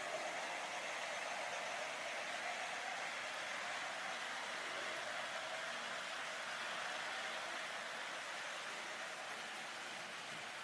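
A 00 gauge model train running along the track with a steady whirring hiss that eases a little toward the end.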